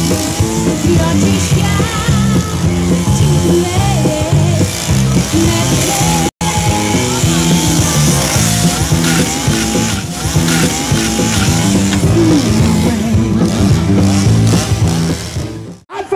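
Loud music with a running chainsaw engine mixed in, briefly cutting out a little over six seconds in.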